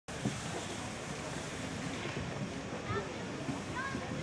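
Steady wind noise on the microphone, with faint voices talking in the background.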